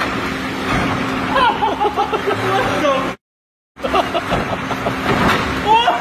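Honda VTEC engine running under the open hood, a steady hum with many short squeaky chirps over it. The sound cuts out for about half a second just after three seconds in, then picks up again.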